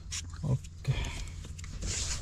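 Liquid hand sanitizer squirted from a pump bottle into an open palm, with two short squelches, followed by hands rubbing together.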